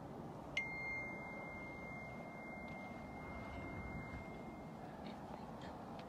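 A small bell struck once about half a second in, its clear ding ringing on and fading over about four seconds, above a steady low rumble.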